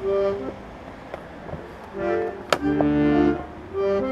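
Dallape piano accordion sounding held chords in short phrases, with a quieter gap of about a second and a half between them. A single sharp click comes about two and a half seconds in.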